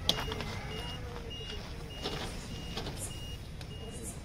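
A bus's electronic warning beeper repeating a short high beep, about two to three times a second, over the low rumble of the bus's idling engine. A sharp knock sounds right at the start.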